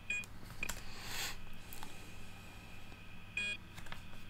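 Two short electronic beeps, one just after the start and one past three seconds in, with a few faint clicks and a brief soft hiss about a second in.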